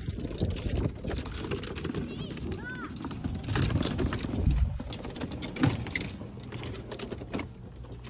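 Wind buffeting the microphone of a phone carried on a moving golf cart, a rough low rumble that swells and fades, with scattered knocks and rattles from the cart and from handling the phone.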